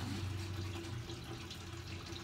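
Slime being worked by hand, with faint wet squishing, over a low steady hum.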